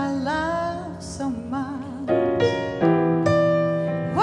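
Live jazz ballad for female voice and acoustic piano: the voice sings a sustained, wavering phrase over piano, then the piano carries on alone with a few struck chords in the second half.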